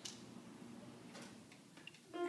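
Near silence in a pause between electronic keyboard notes, with a few faint clicks.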